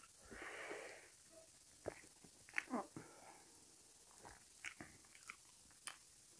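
A person eating rice and curry by hand, heard faintly. There is a drawn breath just under a second long near the start, then scattered clicks and smacks of chewing and of fingers working the rice on a steel plate.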